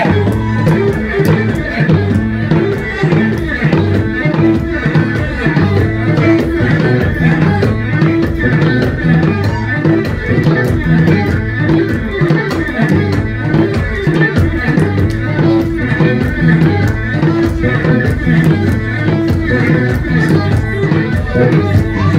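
Live Ethiopian band music: kebero drums keep a steady driving rhythm under a plucked bass krar, with violin and masenko playing over them.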